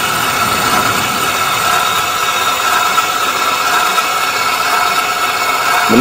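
Viper JS-3500 swing gate actuator running steadily while it closes the gate: the electric motor and gear train drive the screw arm and slowly turn the limit-switch gear toward its close stop. The motor gives a steady whine over a mechanical hum.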